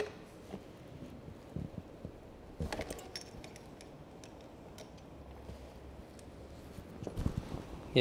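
Faint metallic clicks and clinks from a wrench being worked on a bicycle's rear axle nut as it is loosened. There are a few scattered light clicks, a small cluster of them about a third of the way in, and a duller knock near the end.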